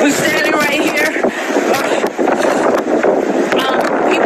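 Hurricane wind and rain blowing hard and steadily, with people's voices over it near the start and again near the end.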